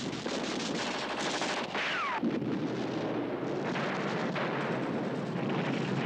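Battle sounds: continuous rapid machine-gun and rifle fire, with a whistle falling in pitch about two seconds in.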